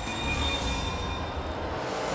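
Television quiz-show title music: a low rumbling whoosh under a few held high tones, building toward the louder theme at the end.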